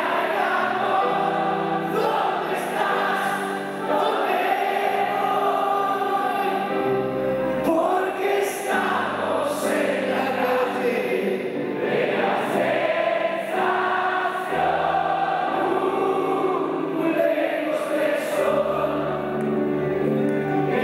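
Live rock band performing a ballad: male voices singing together over electric guitar, bass guitar and grand piano.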